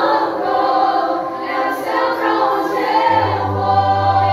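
A youth group of girls and young women singing a Christian worship song together, one voice led on a microphone. A steady low bass note comes in about three seconds in.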